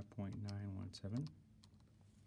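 A few light, separate clicks of calculator keys being pressed as a sine calculation is keyed in.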